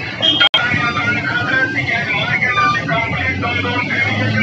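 A horn loudspeaker mounted on a small municipal garbage truck plays an amplified, wavering voice over the truck's engine running. The sound cuts out sharply for an instant about half a second in.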